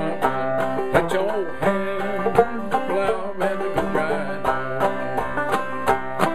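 Clawhammer banjo playing an old-time tune: a steady, quick run of sharp plucked notes ringing over one another in a syncopated rhythm.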